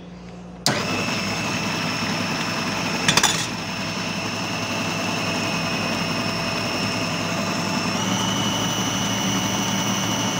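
Electric food processor switched on a little under a second in, its motor running with a steady high whine as it beats eggs with vanilla essence. There is a brief rattle about three seconds in, and the whine steps up slightly in pitch about eight seconds in.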